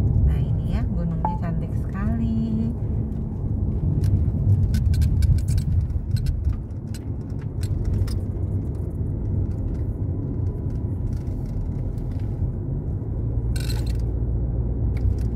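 Car road noise heard inside the cabin while driving: a steady low rumble of tyres and engine. A run of light clicks comes about four to eight seconds in, and a short burst of noise near the end.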